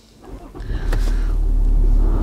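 Land Rover Discovery's 3.0-litre V6 diesel engine starting up about half a second in and settling into a steady low idle, with a click about a second in as the rotary gear selector rises.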